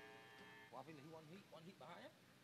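Near silence, with faint male voices talking from about a second in.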